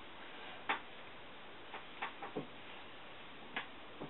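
Low room hiss with a handful of faint, irregular clicks and taps.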